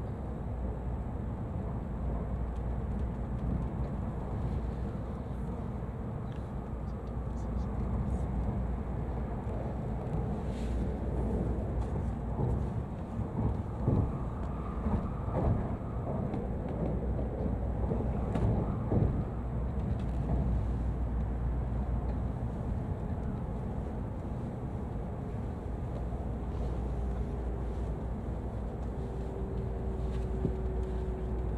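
Passenger-cabin noise of an N700-series Shinkansen running on elevated track: a steady low rumble, with a run of short knocks and clacks through the middle stretch.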